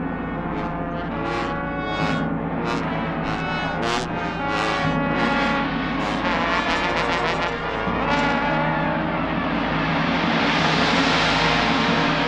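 Brass ensemble of trumpets and trombones playing held, overlapping notes, with sharp repeated attacks through the first few seconds. From about two-thirds of the way through, a gong swells up underneath them and grows louder toward the end.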